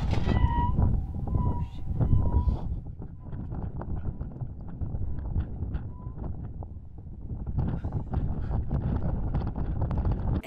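Wind buffeting the microphone with a steady low rumble. A metallic ringing left over from the cannon shot dies away over the first couple of seconds.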